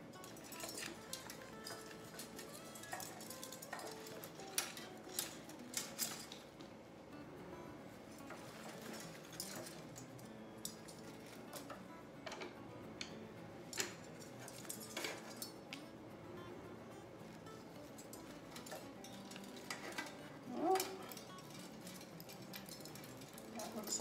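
Soft, faint music under scattered light clicks and small clinks of decorations being handled: wired picks, stars and the lantern knocking on a stone counter. A short vocal sound comes near the end.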